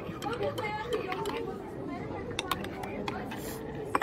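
Background chatter of other people's voices around a café table, with a few light clicks scattered through.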